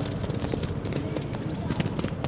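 Shoes clicking and scuffing on stone paving in quick, irregular dance steps.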